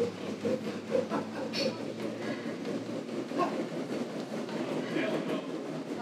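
Stepmill's revolving stairs running under a climber's quick steps: a steady mechanical rumble with light knocks from the footfalls.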